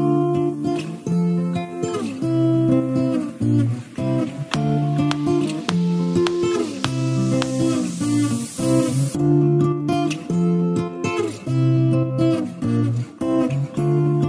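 Background music: an acoustic guitar playing a plucked, repeating pattern of notes.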